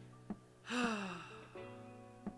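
A man's long exasperated sigh, falling in pitch, over background guitar music.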